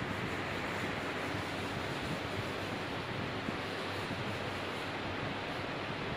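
Steady hissing background noise with no distinct events: room noise with no voice.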